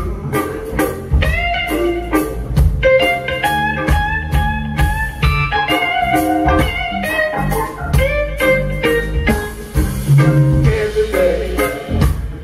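Live blues band playing an instrumental passage: an electric guitar plays a lead line of held, bent notes over the drums.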